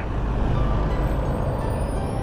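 Road traffic going by: a steady rumble of passing vehicles, with a faint high whine slowly rising from about a second in.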